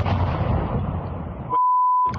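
A munitions-depot explosion heard through a phone's microphone: a sudden blast that rumbles on for about a second and a half. Near the end a steady high censor bleep covers a swear word.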